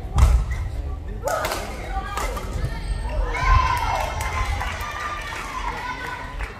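Badminton rally: sharp racket strikes on the shuttlecock and players' feet thudding on the court floor, with voices in the hall.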